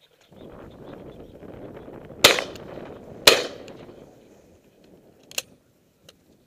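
Shotgun fired twice, about a second apart, over a steady rustling noise. A smaller sharp click follows near the end.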